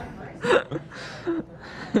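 A short breathy laugh about half a second in, followed by faint voice sounds.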